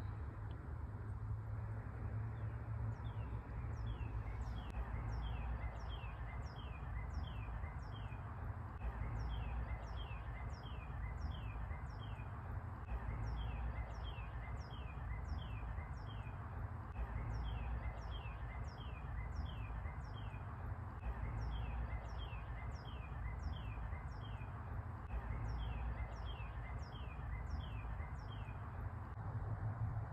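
Northern cardinal singing: a long run of repeated down-slurred whistles, about two or three a second, in phrases with short breaks. It starts a few seconds in and stops just before the end, over a steady low rumble.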